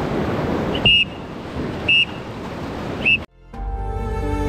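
Whitewater rapids rushing, then three short high beeps about a second apart over the water noise. The sound cuts off suddenly just after the third beep, and soft music fades in near the end.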